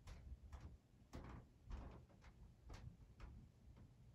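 Near silence with faint, short clicks about twice a second: a tripod's video pan head and handle being turned slowly by hand for a pan.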